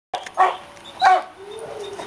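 A dog giving two short, high-pitched barks about half a second apart, followed by a faint, steady whine.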